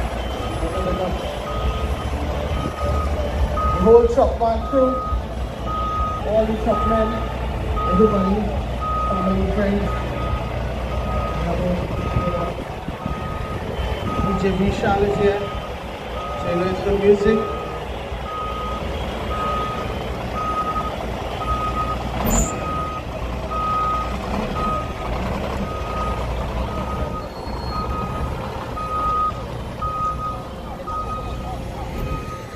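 Truck reversing alarm beeping steadily, a little over once a second, over the low steady running of a heavy truck's engine. One short sharp sound cuts in about two-thirds of the way through.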